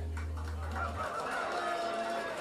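A low piano note held under the pedal, cut off about a second in, followed by audience voices calling out and whooping.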